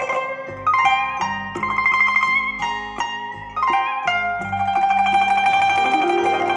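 Instrumental music with plucked-string notes, played back through a pair of bare Wigo Bauer 25 cm ferrite-magnet speaker drivers on an EL84 push-pull valve amplifier. Notes start sharply and ring out, with a longer held tone in the second half.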